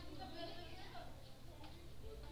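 Faint voices talking in the background, not close to the microphone, over a low steady hum.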